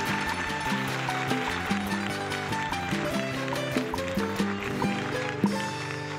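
Cuban laúd picked with a plectrum, playing a quick instrumental passage of punto guajiro over a sustained low string and bass accompaniment.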